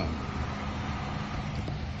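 Steady low hum of a running motor vehicle, with a faint steady drone underneath.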